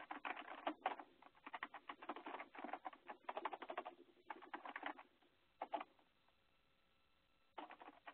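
Faint computer keyboard typing in quick runs of keystrokes, a long run through the first five seconds, a brief burst near six seconds and another run near the end.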